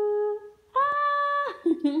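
A woman's voice humming two long held notes, the second higher than the first, with a short murmured 'mm-hmm' near the end.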